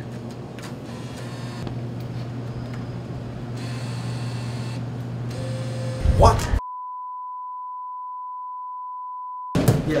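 A steady low hum with faint handling noise, then a short loud burst that is cut off by a pure 1 kHz bleep tone held for about three seconds over dead silence: an edited-in censor bleep.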